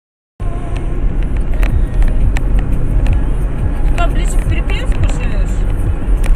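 Silence, then a sudden start about half a second in of a car driving, heard from inside the cabin: a loud, steady low rumble of engine and road noise.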